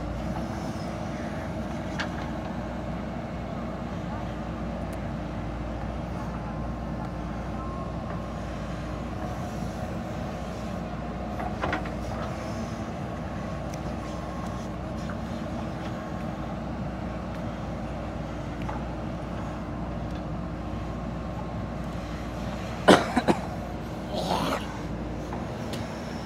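JCB backhoe loader's diesel engine running steadily under load as it digs and loads soil, with a brief knock about halfway and a couple of sharp, loud knocks near the end.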